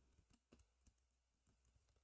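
Faint typing on a computer keyboard: several irregular keystrokes, about three or four a second, over near silence.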